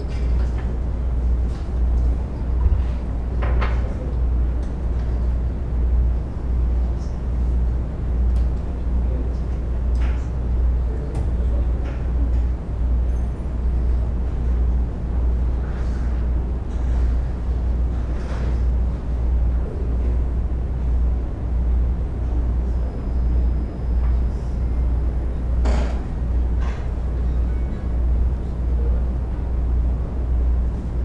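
Low, steady rumble of room noise picked up by an open microphone, with a few faint knocks and clicks scattered through it.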